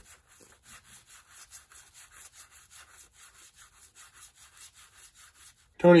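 1984 Donruss baseball cards sliding against one another as they are thumbed off a stack one at a time. The card rubs come in a soft, quick, even rhythm of about five a second.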